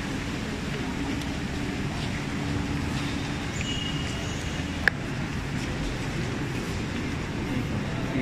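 Steady background hum of traffic and crowd outside an airport terminal, with a brief high beep about three and a half seconds in and one sharp click just before the five-second mark.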